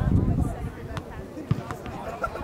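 Players and spectators calling out across an outdoor soccer field. Two sharp thuds come through, about a second in and again half a second later.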